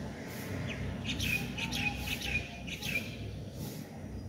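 A bird calling: a quick run of about six short chirps, each dropping in pitch, between about one and three seconds in, over a steady low background noise.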